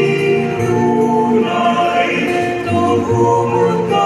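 Small mixed church choir of men's and women's voices singing a hymn in harmony, holding long notes.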